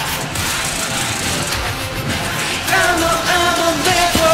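Thin, hissy remains of a K-pop track with its backing music filtered out, then a male voice singing a long, wavering held note from about three seconds in.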